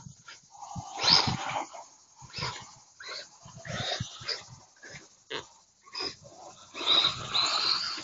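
Small electric RC cars being driven in short throttle bursts over loose dirt, the motors and spinning tyres making irregular rough bursts of noise with brief gaps between them. The longest bursts come about a second in and again near the end.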